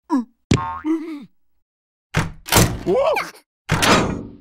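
Cartoon sound effects and wordless character vocalizing. A short glide falls in pitch, then a drawn-out voice-like sound falls in pitch. From about halfway come loud noisy outbursts with sliding pitch, and another starts near the end.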